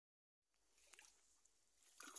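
Near silence: faint background hiss with a couple of soft clicks just before a second in.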